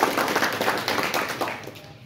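A crowd of people clapping their hands in a dense, irregular patter that thins out and dies away near the end.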